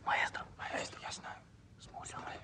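Hushed whispering in a few short phrases, loudest in the first second.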